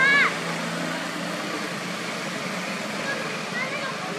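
A macaque gives a short, high-pitched call that rises and falls, right at the start, over a steady background hiss. A few faint short chirps follow near the end.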